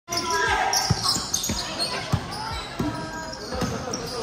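Basketball being dribbled on a hard court floor, about two bounces a second, over spectators' voices in a large hall.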